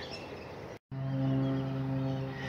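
A steady low hum with several even overtones, like a distant machine or motor running, starting after a brief cut-out of sound just under a second in. Before that there is only faint outdoor background.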